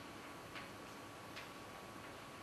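Two faint ticks of chalk striking a blackboard while writing, a little under a second apart, over a steady faint hiss.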